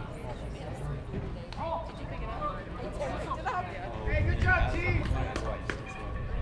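Distant, unclear voices of players and spectators calling and chattering at a baseball field, louder about four seconds in, over a steady low rumble of wind on the microphone.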